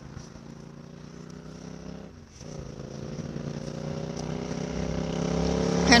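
A motor vehicle's engine approaching, its hum growing steadily louder over the last few seconds and rising slightly in pitch.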